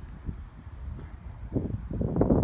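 Wind buffeting the microphone: an uneven low rumble that swells about one and a half seconds in.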